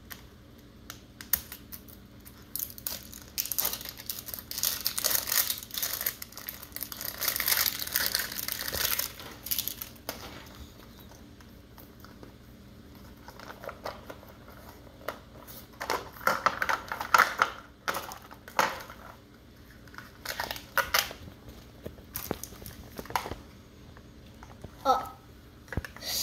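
Thin plastic wrapping crinkling and tearing as a Mini Brands capsule ball is unwrapped by hand: a long spell of crinkling in the first half, then quieter, then more crinkling with sharp clicks of the plastic ball and wrappers in the second half.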